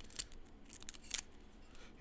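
Small kitchen knife cutting at a garlic clove held in the hand: a few faint, crisp clicks and scrapes, the sharpest a little over a second in.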